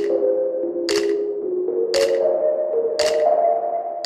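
Outro music: sustained chords that shift step by step, with a sharp percussive hit about once a second.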